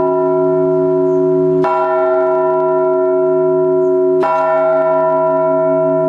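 Large Orthodox church bell rung in slow, single measured strokes (blagovest). The clapper strikes twice, about one and a half seconds in and again about four seconds in, and each stroke rings on steadily with many tones until the next.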